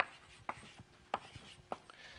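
Chalk writing on a blackboard: about four sharp taps and short strokes, spread across two seconds, with faint scratching between them.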